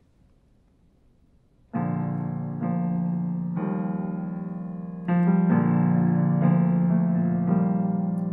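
Roland digital piano playing the slow chordal intro to a song: silent for nearly two seconds, then sustained chords that change about once a second.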